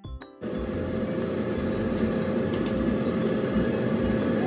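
Digital air fryer running at 200 degrees: a steady fan whir with a constant low hum, starting about half a second in after a few closing notes of background music.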